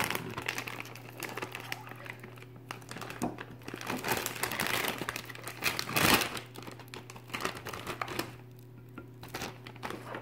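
Plastic pouch of Crayola Model Magic crinkling as hands work the white modeling compound out of it, with the loudest crackle about six seconds in and quieter handling near the end.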